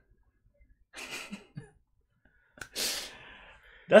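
Two short, breathy puffs of a person's breath, one about a second in and a stronger one just under three seconds in, with a small click between them.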